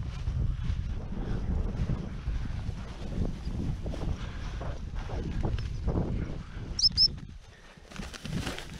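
Footsteps swishing through tall dry grass, with wind buffeting the microphone. Just before the end there are two short high-pitched chirps in quick succession, and then the walking stops.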